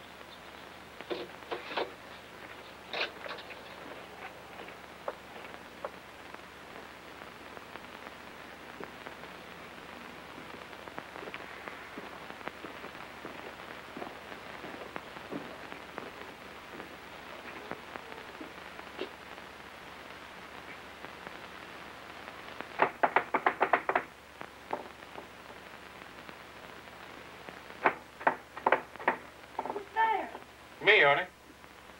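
Two short bouts of rapid knocking on a house door, each a quick run of several sharp raps lasting about a second, the second bout a few seconds after the first, over a steady soft outdoor hiss. A few faint clicks sound in the first few seconds.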